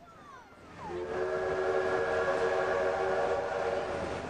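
Steam locomotive whistle blowing one long, steady chord of several notes at once. It starts about a second in and is held for about three seconds.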